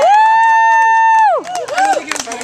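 A person's long, high-pitched cheer held steady for about a second and a half, then breaking off into short calls.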